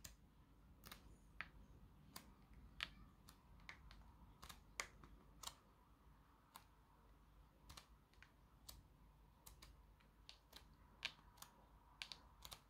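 Near silence with faint, irregular clicks from the pages of a glossy magazine being handled and turned.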